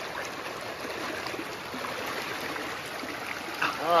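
Steady rush of shallow river water running over rocks in a riffle, an even hiss with no pauses.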